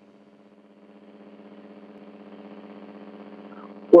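Steady low electrical buzz on an open telephone line, one low note with a stack of overtones, growing louder after about a second. A caller's voice starts at the very end.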